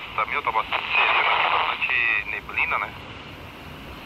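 Handheld walkie-talkie receiving a voice transmission: muffled, unintelligible speech broken by static hiss, quieter after about three seconds.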